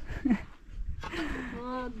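A woman's voice, talking in short bits with brief pauses in between.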